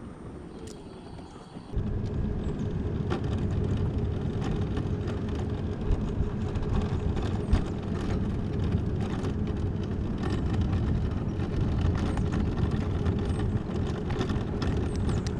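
Electric mobility scooter setting off about two seconds in and running steadily over cracked asphalt: a steady motor hum with rumble, rattles and knocks from the frame and wheels.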